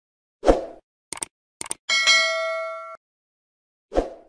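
Animated logo intro sound effects. A low thump comes first, then two quick pairs of clicks, then a bright metallic ding that rings for about a second and cuts off abruptly. Another thump lands at the very end.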